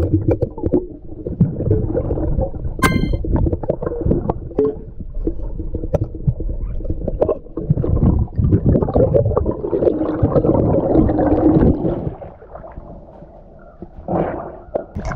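Muffled, rumbling underwater noise as a snorkeler stirs the seabed and digs glass bottles out of the silt, heard through an underwater camera housing, with scattered sharp clinks of glass. The noise drops away about two seconds before the end.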